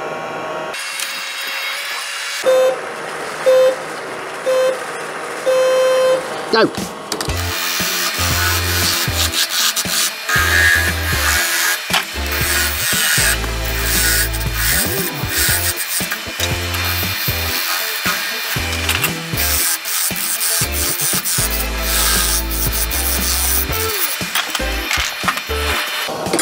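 Four short electronic countdown beeps about a second apart, the last one held longer, then background music with a steady beat.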